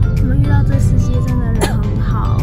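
Low rumble of a car's cabin while driving, with background music playing over it.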